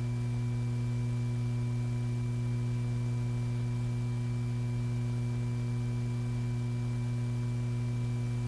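Steady electrical hum on an old film soundtrack: a low buzz with fainter, higher steady tones above it, and no other sound.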